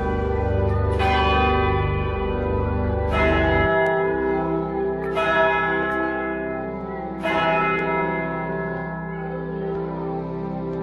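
Cologne Cathedral's church bells ringing close up in the belfry: four strong strokes about two seconds apart, each ringing on over a long hum.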